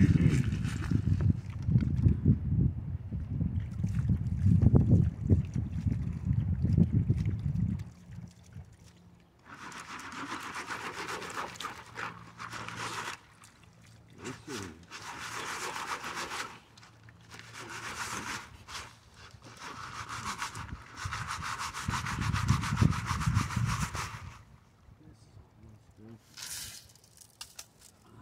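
Gravel and sand being rubbed and swished by hand through a plastic classifier screen over a gold pan held in river water, a rasping scrape in several bursts of a few seconds each. It opens with about eight seconds of low rumble.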